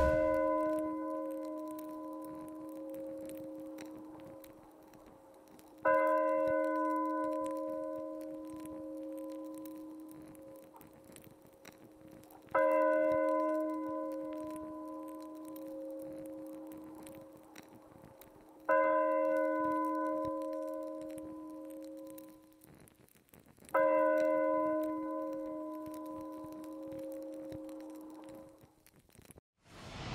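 A single bell tolled slowly, five strikes about six seconds apart, each ringing on and fading before the next: a toll for the dead.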